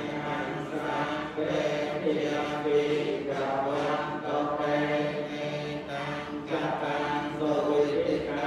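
Theravada Buddhist monks chanting Pali verses, a steady recitation in long held notes.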